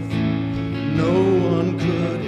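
Live worship band playing: strummed acoustic guitar with other instruments under a sung melody.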